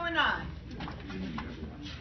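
A short, high vocal call from the room, its pitch rising then falling, right at the start, followed by the low murmur of a seated audience.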